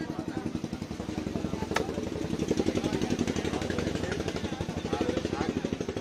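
A large fish-cutting knife chops once into fish on a wooden chopping block about two seconds in. Under it a small engine runs steadily with a rapid pulse, and voices are heard.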